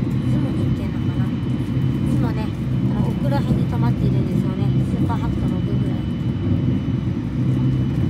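Steady running rumble heard inside the passenger cabin of a JR West Thunderbird limited express electric train on the move, with a faint steady high tone above it.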